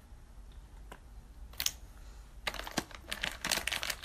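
Light clicks and taps over a low steady hum: a single click about a second in, a short rustling burst past halfway, then a quick irregular run of clicks near the end.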